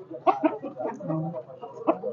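Chickens clucking in a series of short, quick calls.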